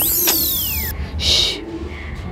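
A shimmering, high-pitched sound effect of many gliding tones that sweep up and fall away, fading about a second in, followed by a short hiss.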